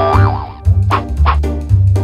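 Background children's music with a cartoon "boing" sound effect: a wobbling, warbling tone in the first half second.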